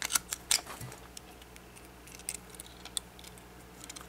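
Small sharp clicks of LEGO plastic pieces being pressed and handled: several in quick succession at the start, then a few scattered single clicks. The parts are being squeezed firmly together on both sides to seat a piece that was sticking out and making the gyrosphere frame catch.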